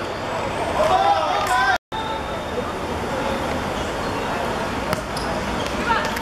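Voices calling out across an outdoor football pitch over a steady background of traffic noise, broken by a brief dead-silent gap at an edit about two seconds in; after the gap the steady traffic and crowd background carries on with only faint voices.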